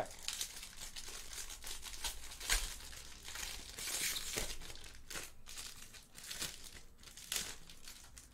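Foil wrapper of a Topps Pristine baseball card pack crinkling and tearing as it is pulled open by hand, in irregular bursts of rustling.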